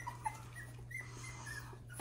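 Miniature Schnauzer puppies whimpering: several faint, short, high squeaks, the puppies looking to be fed.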